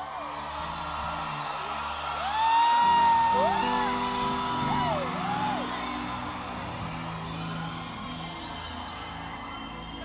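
Congregation chattering and cheering over sustained keyboard chords, with several long whoops that rise and fall in pitch a few seconds in, the loudest part of the stretch.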